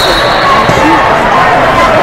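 Many overlapping voices of spectators and coaches calling out in a large sports hall during a wrestling bout, with dull thumps underneath.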